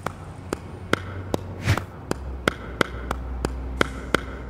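Hand claps keeping a steady beat, about two to three a second.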